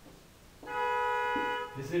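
Whiteboard marker squeaking against the board as a stroke is drawn: one steady squeal lasting about a second.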